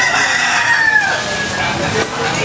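A rooster crowing: one long call of about a second and a half that falls in pitch toward its end, over the hubbub of a street market.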